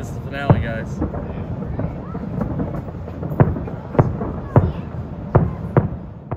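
Distant fireworks: a steady low rumble broken by six sharp booms. There is one near the start, then they come roughly every half second to second through the second half.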